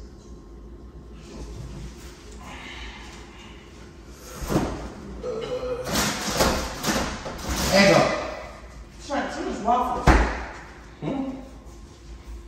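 Refrigerator door opened, with knocks and rattles while it stands open. It then swings shut with a sharp thump about ten seconds in.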